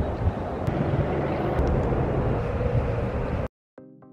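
Outdoor street ambience: a steady low rumble that cuts off suddenly about three and a half seconds in. Soft background music starts just before the end.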